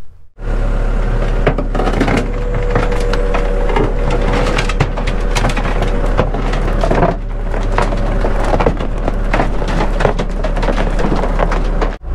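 Tracked excavator crawling slowly onto a wooden trailer deck: a steady engine hum under many sharp cracks and creaks as the steel tracks bear down on the timber planks. The machine is passing its cam-over point and settling onto the trailer.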